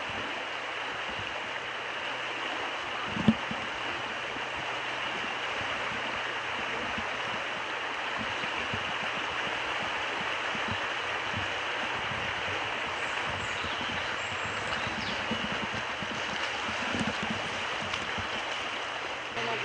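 Steady rush of water over a shallow river riffle, with one short sharp knock a little over three seconds in.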